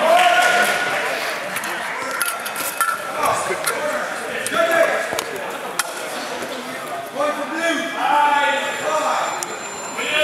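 Indistinct voices talking in a large sports hall, with a few scattered sharp knocks and taps.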